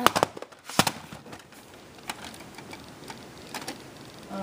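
A handful of sharp clicks and knocks, the loudest a little under a second in, from plastic VHS cassettes and cases being handled and set down on a wooden surface.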